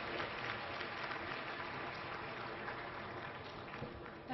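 Audience applauding in a large hall, the clapping slowly dying away.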